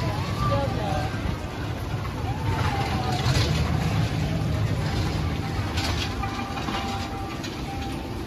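Spinning roller coaster cars rolling along a steel track with a steady low rumble, with people's voices around.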